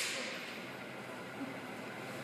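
The ring of a clapperboard snap dying away in a large studio, leaving quiet room tone with a faint hiss and one small knock about halfway through.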